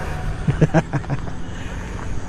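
A man laughing in a quick run of short bursts about half a second in, over a steady low rumble.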